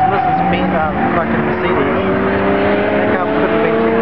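A drift car's engine held at high revs through a sideways slide, its note steady and then slowly climbing from about a second and a half in. Nearby spectators talk over it.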